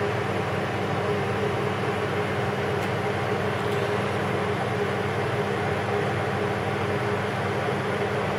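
Steady machine hum and hiss of a kitchen appliance running, even in level throughout, with a few low steady tones in it.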